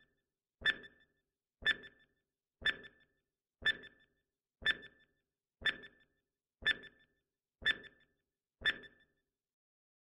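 Countdown timer sound effect: a short pitched blip once a second, nine in all, stopping about nine seconds in.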